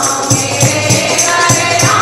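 A group of devotees singing a Krishna bhajan (kirtan) in chorus, over a steady jingling percussion beat of about four strokes a second.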